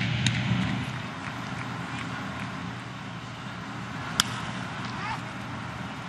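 Steady ballpark background sound during a baseball broadcast, with one sharp crack about four seconds in: a bat hitting a pitch on the ground.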